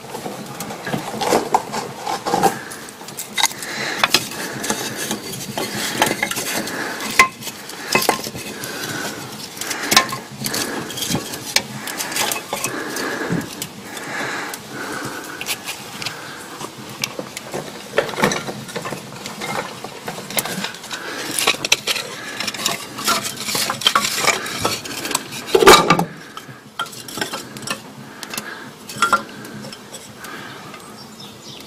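Irregular clinks, clatters and knocks of metal and wood as the firebox of a small steam launch boiler is loaded and tended while it is lit with wood kindling. One louder knock comes near the end.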